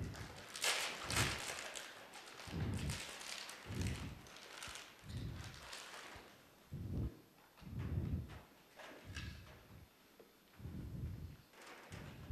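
Performers moving on a stage: dull thumps about once a second, like footfalls or bumps, with rustling in the first couple of seconds.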